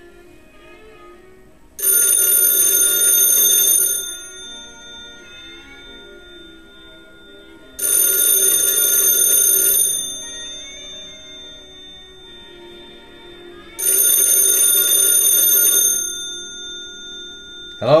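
Western Electric 634 ringer box's bells ringing three times, each ring about two seconds long with four seconds of silence between, the standard telephone ring cadence. A short sharp knock comes right at the end.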